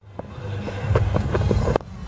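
Cricket ground ambience on the broadcast field microphones: a steady low rumble with a handful of short knocks that come closer and closer together, then cut off just before the end.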